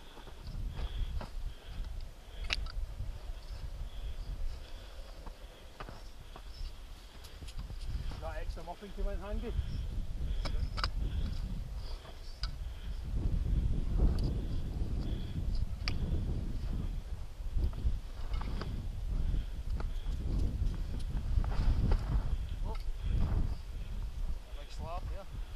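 Wind buffeting the microphone with a steady low rumble, over the crunch and thud of boots plunging through deep snow on a steep climb. A brief muffled voice comes about eight seconds in.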